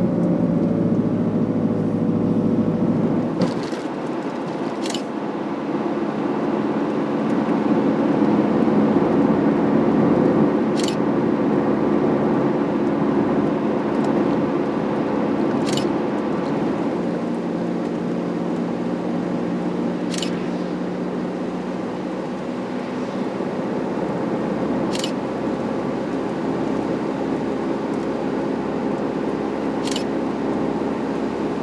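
Nissan Vanette van driving on a wet road, heard from inside the cab: a steady engine hum over tyre and road noise. The engine note changes about three and a half seconds in, and a faint click recurs every five seconds or so.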